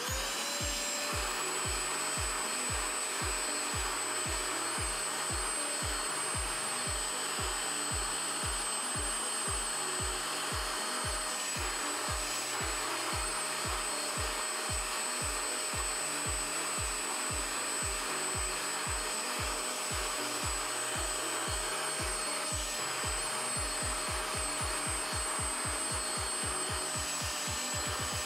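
Anko spot cleaner's suction motor running steadily with a high whine as its upholstery nozzle draws water out of carpet. Background music with a steady beat plays underneath.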